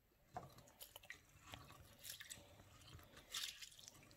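Raw rice grains being rubbed and stirred by hand in a bowl of water: faint, irregular little swishes, squishes and grainy clicks.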